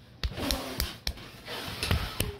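About five sharp clinks and taps of plates and cutlery being handled on a wooden table as a cake is served, spaced irregularly through the two seconds.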